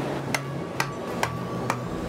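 Steel pick tapping the rock face: four sharp, evenly spaced strikes about half a second apart, over a low steady hum.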